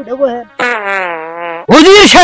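A drawn-out vocal moan held for about a second at a nearly steady pitch, between short bursts of voice, with a loud voice breaking in near the end.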